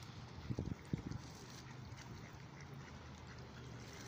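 Mallard ducks on a pond quacking briefly, two short low calls about half a second and a second in, over a steady low background rumble.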